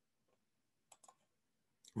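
Near silence, with a couple of faint, quick computer clicks about a second in as the shared slides are changed.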